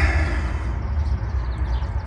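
Steady low rumble of car-cabin background noise, with no other distinct event.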